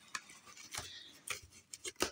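Cardboard shipping box being handled and worked open by gloved hands: a few light clicks and scrapes on the cardboard, with a soft rustle.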